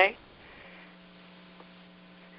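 Faint, steady low electrical hum with a light hiss underneath, in a pause between voices. The hum drops out for about half a second early on, then returns and holds steady.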